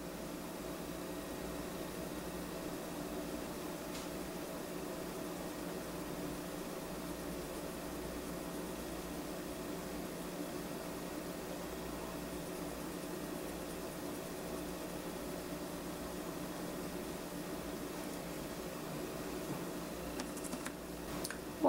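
Steady background hum and hiss of room noise, with one faint click about four seconds in.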